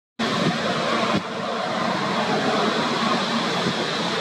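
Steady rushing outdoor background noise. It is cut off by a brief silence right at the start, then resumes, with a small drop in level about a second in.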